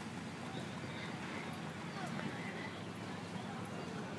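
Outdoor background of faint, indistinct voices talking, over a steady low rumble.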